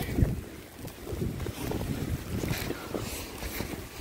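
Wind buffeting the microphone: an unsteady, gusting low rumble with a faint hiss above it.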